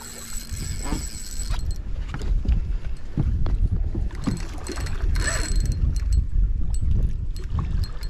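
Wind buffeting the microphone and small waves slapping a fibreglass boat hull, with two brief whirs of a spinning reel being cranked as a redfish is reeled in, one at the start and one about five seconds in.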